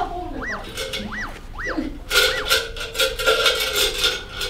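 Edited-in comic sound effect: three quick whistle-like tones, each rising and falling. From about halfway, a held tone sounds over a rapid clatter of metal spoons in a tin can.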